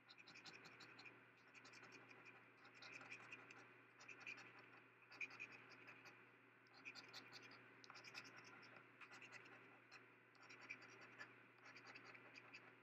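A coin scraping the coating off a paper scratch-off lottery ticket, quietly, in quick runs of short strokes with brief pauses between runs.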